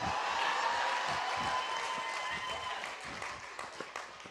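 Congregation applauding, with scattered voices, dying away over a few seconds.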